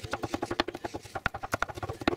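Kitchen knife chopping peanuts on a wooden cutting board: quick, even knocks of the blade on the board, about ten a second.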